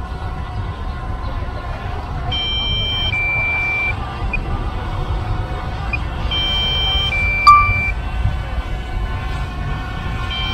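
DJI Mavic Air low-battery warning: a two-tone electronic beep, a higher note then a longer lower one, repeating about every four seconds, which signals that the battery is nearly flat and only enough remains to return home. It sounds over a steady low rumble, with one sharp click about seven and a half seconds in.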